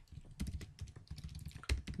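Typing on a computer keyboard: a run of irregular keystrokes, the loudest near the end.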